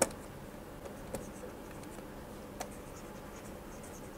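Stylus tapping and scratching on a tablet screen while handwriting: a sharp click at the start, then two fainter clicks, over faint steady room noise.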